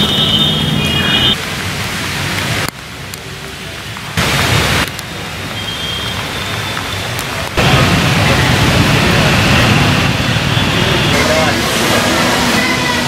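Steady outdoor noise with indistinct voices in it. The level jumps up and down abruptly several times, as the sound is cut from clip to clip.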